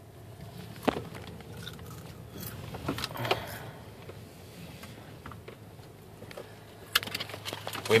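Low steady hum of a car's engine running, heard from inside the cabin, with a few light clicks and knocks scattered through it.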